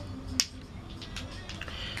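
A sharp click of a glass nail polish bottle being handled, followed by a few faint taps.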